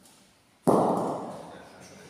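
A thrown bocce ball hitting with a single loud, hard knock about two-thirds of a second in, ringing on and fading through the hall's echo.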